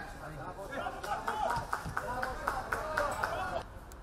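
Players' voices and shouts on a football pitch during play, with several short sharp knocks in among them. Shortly before the end the sound drops and changes abruptly.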